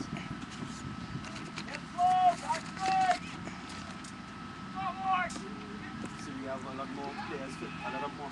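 Several loud, high-pitched shouted calls, about two, three and five seconds in, over a steady background of field noise, with quieter voices talking near the end.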